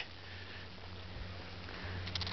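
A person breathing faintly close to the microphone, over a low steady hum.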